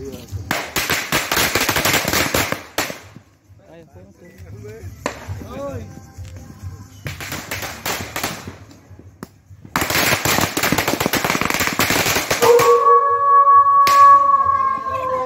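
Firecrackers going off in a burning effigy, in rapid crackling runs of bangs. There are three runs, about half a second in, around seven seconds and from about ten seconds, with quieter gaps between them.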